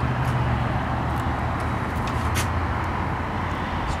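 Steady low hum of an idling vehicle engine, with a few faint small ticks from fingers picking at the adhesive backing on the cover's snaps.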